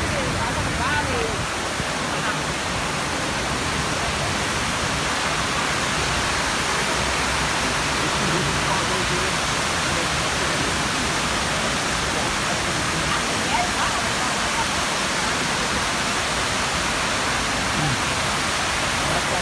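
Steady rush of water pouring down the walls of the National September 11 Memorial reflecting pool, a large man-made waterfall falling into the basin.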